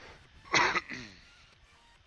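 A man clears his throat once, in a short harsh burst about half a second in that tails off within a second.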